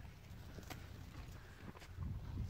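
Faint hoof steps of a horse being led at a walk on a dirt track, two soft clicks about a second apart over a low rumble.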